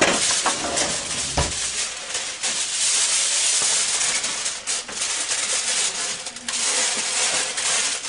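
Aluminium foil crinkling and rustling as it is unrolled and pressed over a cake tin, with a knock about one and a half seconds in.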